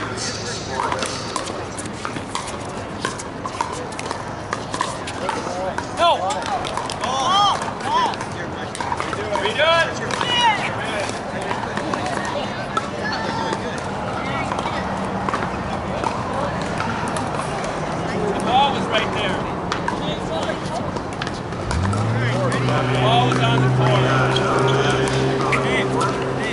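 Outdoor pickleball courts: many distant voices talking and calling, with scattered sharp pops of paddles hitting balls from the surrounding games. About 22 seconds in, a low steady hum starts up and holds to the end.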